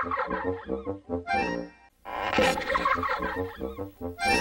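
Short musical logo jingle with a quick run of changing notes, heard twice: it stops just before two seconds in and the same jingle starts again at once.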